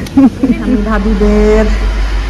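A child's voice chanting in a drawn-out sing-song, holding long notes, part of a repeated "please" chant.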